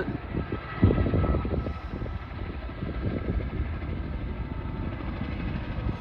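A Chinook tandem-rotor helicopter approaching overhead, its two rotors making a low, rapid chopping rumble.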